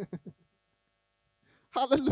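A man's voice through a handheld microphone: a few short low sounds at the start, a pause of about a second and a half, then speech starting again near the end.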